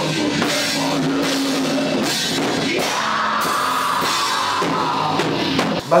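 Melodic metalcore band playing: distorted electric guitars over a drum kit with cymbals, loud and steady, cut off just before the end.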